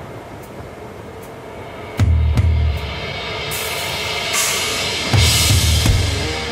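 Heavy metal song intro played by a rock band: two heavy low bass-and-kick-drum hits about three seconds apart, with light ticks between them and a cymbal wash swelling in the second half.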